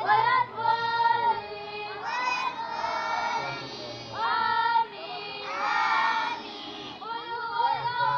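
Schoolboys singing in children's voices, in short phrases of held notes with brief breaks between them.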